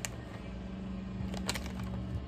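Steady low electrical hum of room tone, with two short clicks, one at the start and one about a second and a half in.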